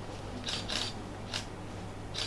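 Three short, sharp camera shutter clicks, the first two close together and the third about half a second later, over a faint steady room hum.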